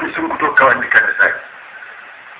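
A man preaching in Arabic on an old, radio-quality recording, breaking off about a second and a half in, leaving a steady background hiss.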